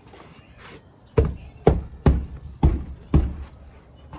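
Five heavy shoe footfalls on a wooden deck, about half a second apart, with snow on the shoes.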